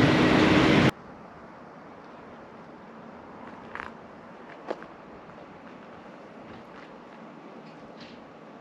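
Loud, steady vehicle and machinery noise at a truck-stop fuel pump that cuts off abruptly about a second in, leaving a faint steady outdoor background with two brief, faint sounds near the middle.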